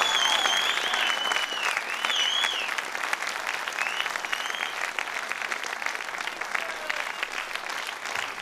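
Concert audience applauding, with whistling gliding over the clapping in the first three seconds; the applause slowly tapers off.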